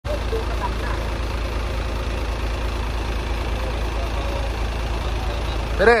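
Diesel truck engine idling steadily with a deep low rumble. A voice calls out briefly at the very end.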